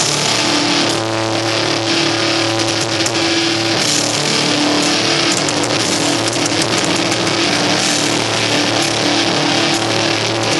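Blackened death metal band playing live, with heavily distorted guitars and bass holding chords over dense drumming. The full band comes in at the start.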